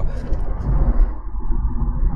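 Steady low rumble of engine and road noise heard inside the cabin of a 2023 VW Polo Highline on the move, powered by its 170 TSI 1.0-litre turbocharged three-cylinder engine.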